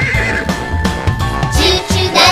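The end of a zebra's whinnying call, falling off in the first half second over a music backing, followed by held music notes.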